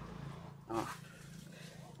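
One short voiced sound from a person, a brief hesitation, about three-quarters of a second in, over a faint steady low hum.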